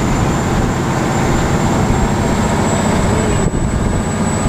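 Water-bus engines running loud and steady, a dense low rumble heard from on board close to the engines.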